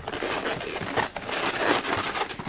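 Latex modelling balloons rubbing against each other and against the hands as they are pressed and wrapped around a round balloon: a steady rustle with a few short, sharper noises.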